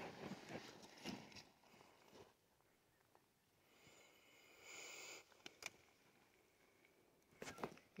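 Near silence, with faint rustling that fades out over the first two seconds, a faint hiss a little after the middle, and a couple of soft clicks.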